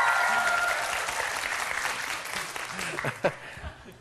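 Studio audience applauding, with high screaming cheers that die out about a second in. The applause then fades away toward the end.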